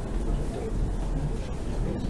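Indistinct voices talking in a large hall, too faint or overlapping to make out, over a steady low rumble.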